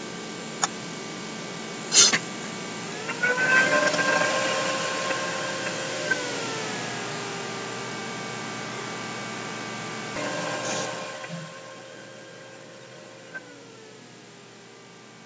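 A computer's cooling fan whirring, rising in pitch about three seconds in as the program loads, then easing down in steps. A sharp mouse click comes about two seconds in, with fainter clicks at the start.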